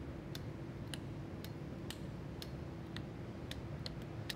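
Switches on a street sweeper's control console being flicked up and down one after another for a switch test, giving faint sharp clicks about two a second over a low steady hum.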